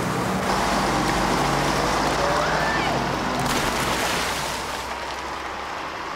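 Diesel bus engine running as the bus pulls away through deep standing water, its tyres spraying and hissing through the flood; the sound fades over the last couple of seconds as the bus drives off.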